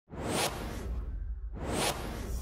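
Two whoosh sound effects for an animated logo intro, each a short rising swish, about a second and a half apart, over a low rumble.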